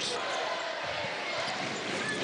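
Steady crowd noise filling a basketball arena, with a basketball being dribbled on the hardwood court.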